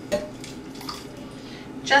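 A short clink of a small pot against a glass bowl just after the start, then quieter handling sounds as warm blackberries in syrup are poured onto yogurt.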